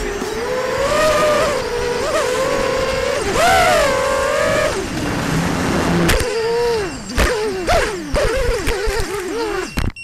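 Racing quadcopter's Cobra 2206 2100kv brushless motors spinning 5x4.5 bullnose props on a 4S battery, heard from the onboard camera. The whine rises and falls with throttle for about five seconds, then dips. From about six seconds it turns choppy and uneven, with several sharp knocks, and it cuts off suddenly at the end.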